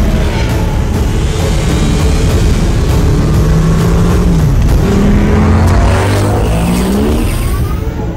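Futuristic light cycles racing: their electronic engine whine slides up and down in pitch as they pass and rises steadily near the end, mixed with film score music.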